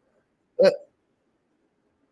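A single short vocal sound from a person, one brief voiced syllable about half a second in.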